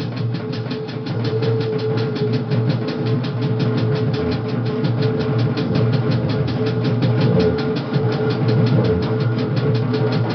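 Drum kit played in a fast, even stream of strokes, with a steady droning tone held underneath: improvised noise drumming.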